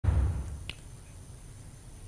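Tail of a news bulletin's title sound effect: a deep low hit fading out over the first half second, then a single sharp click, then quiet.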